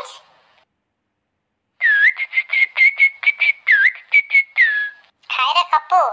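High-pitched whistling comes in about two seconds in: a quick run of short notes on one pitch, about five a second, broken by a few swooping dips.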